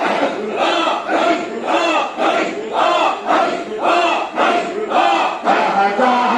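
Crowd of men chanting zikr together, a short loud call repeated in a steady rhythm about twice a second.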